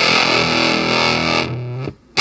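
Electric guitar played through a Sonus Fluxa Rosewater fuzz pedal with the fuzz engaged, giving a thick, distorted tone. A held note or chord rings, fades about a second and a half in, and is cut to a brief silence near the end.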